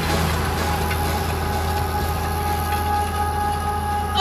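Valtra tractor's diesel engine running steadily under load as it pulls a front disc harrow and seed drill combination across the field, with faint music behind it.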